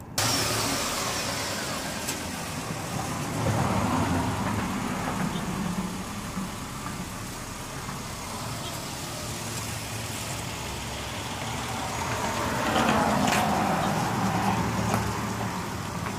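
Minivan engine idling steadily as a low hum that swells twice, a few seconds in and again near the end.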